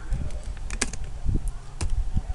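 Computer keyboard being typed on: a few separate keystrokes, unevenly spaced, as a line of code is entered.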